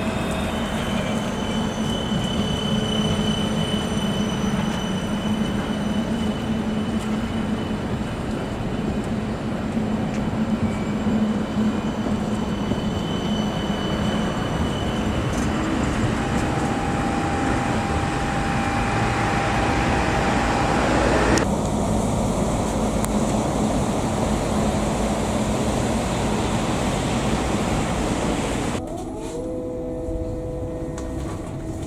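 CAF Urbos 3 low-floor electric tram running along its rails, passing close by, with a steady rolling rumble and a thin electric whine over it. The sound changes abruptly about two-thirds of the way through and drops off near the end.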